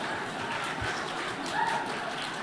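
Low background noise of a hall audience settling, with a soft low thump a little before the middle and a faint brief pitched sound near the end.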